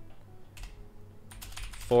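Typing on a computer keyboard: irregular key clicks, coming thicker toward the end.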